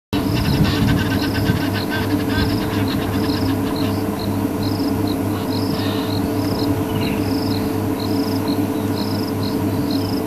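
Insects chirping in a steady repeating pattern, a short high chirp about every three-quarters of a second, over a low steady hum.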